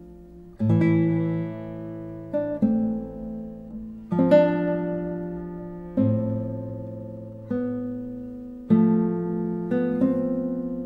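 Solo nylon-string classical guitar, a 1973 Ignacio Fleta e hijos with cedar top and Indian rosewood back and sides, played slowly. Chords are plucked every second or two and left to ring and fade, the first coming about half a second in.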